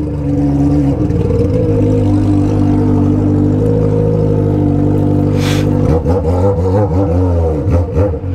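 Honda Hornet inline-four motorcycle with a straight pipe and no muffler, running steadily under way. About six seconds in it revs up and down several times. A brief hiss comes about five and a half seconds in.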